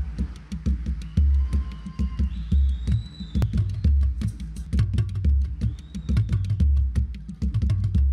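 Percussion intro in the maçambique rhythm: a large wooden barrel drum struck by hand keeps a steady pattern of deep strokes, under a dense run of sharp, crisp clicking strikes.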